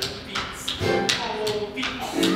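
Tap shoes striking the stage floor in a tap dance, a handful of sharp, unevenly spaced taps over musical accompaniment.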